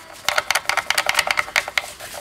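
A rapid, uneven run of small clicks and rattles as a metal guitar strap-lock fitting is handled and pushed onto its strap button.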